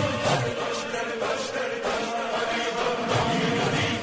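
Devotional Urdu qasida (manqabat) in praise of Ali: a young man's voice recites over a chanted vocal backing.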